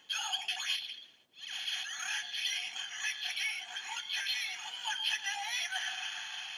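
DX Gamer Driver toy belt playing tinny electronic music and synthesized voice sounds through its small speaker, with a brief break about a second in. This is the belt's standby sound after the Jet Combat Gashat cartridge has been inserted.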